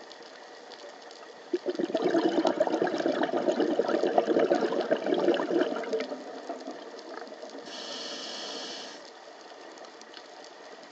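Scuba diver breathing through a regulator underwater: a long burst of exhaled bubbles crackling and gurgling starting about a second and a half in, then a short hissing inhale through the demand valve near the end.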